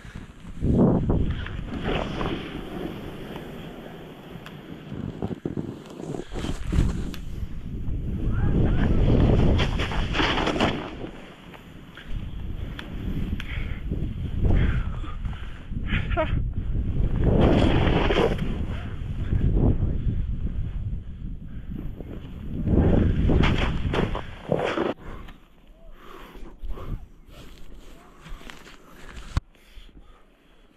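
Wind rushing over the microphone of a selfie-stick camera and a snowboard sliding through deep powder snow, in loud rushing surges that rise and fall with the riding.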